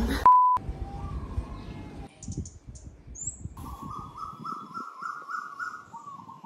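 A short, loud steady beep right at the start, then birds calling: scattered high chirps, followed by a run of repeated notes, about four a second, rising slightly in pitch.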